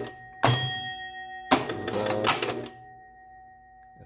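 Electromechanical pinball machine's relays and stepper units clattering in two sudden bursts, about half a second and a second and a half in, as the game scores and counts balls. The first burst has a ringing tone, a score bell or chime, that dies away.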